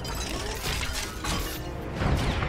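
Action-film destruction effects: dense crackling and shattering of smashed debris, mixed over the film's music score.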